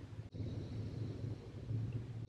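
Faint, steady low hum inside a car's cabin, with a brief dropout about a third of a second in.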